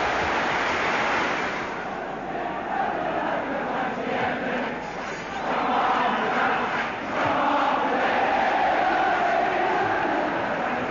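Large football crowd chanting and shouting in the stands. It drops back a little about two seconds in and swells again from about six seconds.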